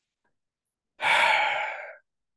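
A man's heavy sigh, one breath out into a close microphone, starting about a second in and fading over about a second.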